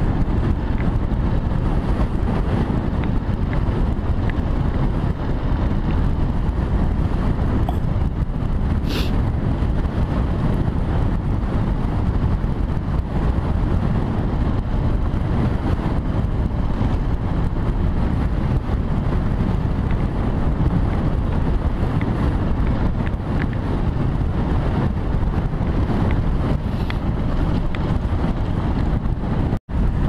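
Motorcycle riding on a gravel road, with a steady rush of wind on the microphone over the engine and tyres on loose gravel. A short sharp sound comes about nine seconds in, and the sound drops out for an instant just before the end.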